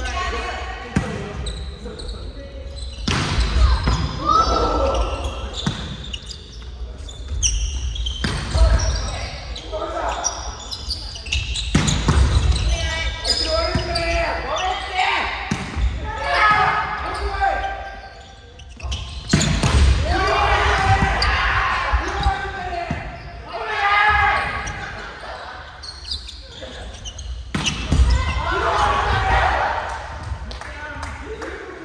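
Volleyball rally in a gymnasium: sharp smacks of the ball being struck, several seconds apart, among players' calls and shouts, with the echo of a large hall.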